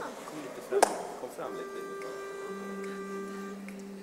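A sharp knock about a second in. Then a steady pitch-pipe note is held for about two seconds while the barbershop singers hum their starting pitch, a lower voice coming in partway through and holding an octave below.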